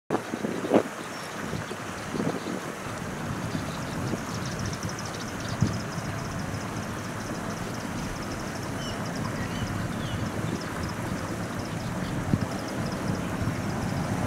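Steady rushing outdoor background noise, with two low thumps, about a second in and near six seconds, and a faint rapid high ticking from about four seconds on.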